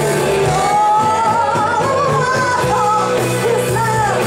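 Live rock band playing: a woman sings lead with long held notes over electric guitars, bass and drums.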